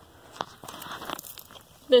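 A metal latch on a SATURO infiltrometer's head being flipped by hand: one sharp click about half a second in, then about half a second of scraping and rustling with small clicks.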